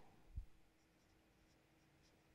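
Near silence: a marker pen writing faintly on paper, with a soft low thump about half a second in.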